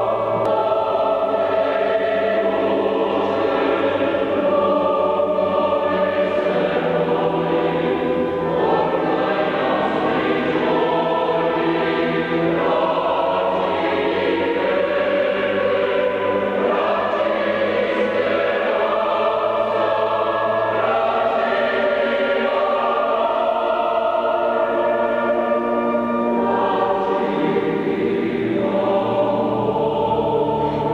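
Large mixed choir singing a sacred oratorio with organ accompaniment, in a church.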